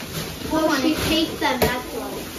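Soft speech from a young child and a woman, with a single sharp knock about one and a half seconds in.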